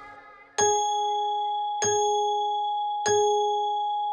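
A clock chime striking the hour: three bell-like dings about a second and a quarter apart, each ringing on and fading slowly before the next.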